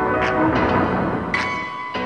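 Band music led by electric keyboard: sustained chords with a struck, bell-like note about once a second, slowly dying away.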